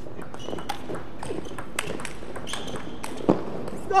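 Table tennis rally: the celluloid-type ball clicking sharply off rubber bats and the table in quick succession, with a louder knock a little past three seconds in.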